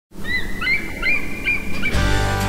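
Bald eagle calling: a run of about six short, high piping chirps over a low rumble.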